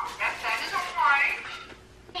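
Children's voices: short, high-pitched exclamations and chatter with no clear words, fading out near the end.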